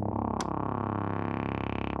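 Synthesizer title-card music: a sustained, held chord with a single sharp click about half a second in.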